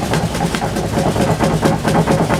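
A young red-dominant Camelot macaw flapping its wings hard while gripping its perch: a loud, rapid run of wing beats, about six or seven a second.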